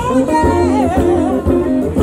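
A live soul band plays: electric guitar, keyboard and drums, with a woman singing a wavering, drawn-out vocal line over them.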